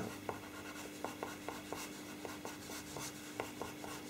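Pastel pencil drawn across pastel paper sealed with fixative: a string of short, faint, scratchy strokes, a few each second, as fur hairs are laid in.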